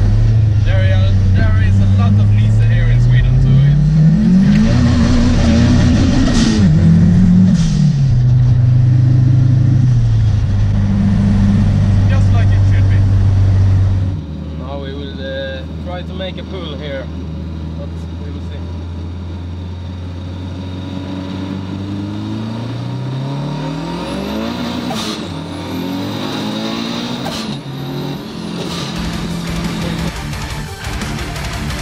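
Heard from inside the cabin, the turbocharged engine of a 700 hp Volvo 745 with a big Holset HX40 turbo revs hard, its pitch climbing and falling a few seconds in. About halfway through the sound cuts to a quieter take. In it the engine runs under load and builds revs again near the end, with a thin rising turbo whistle.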